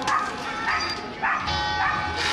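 A dog barking four times, about two barks a second, over the chatter of a crowd.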